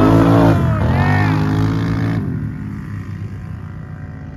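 Two Can-Am ATVs accelerating hard off a drag-race launch, their engines revving with pitch rising and falling. A little past two seconds in, the engine sound drops away sharply, leaving a fainter hum that fades.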